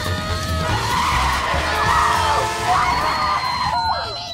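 Film score music over the skidding of a kids' homemade wooden cart taken fast, its wheels squealing.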